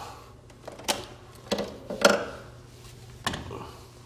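A few sharp clicks and knocks, about one a second and loudest around two seconds in, as an angle grinder's power plug is pushed into a socket and its cord is handled; the grinder motor is not running.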